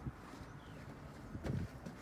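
Faint outdoor background noise with one short, soft thump about one and a half seconds in.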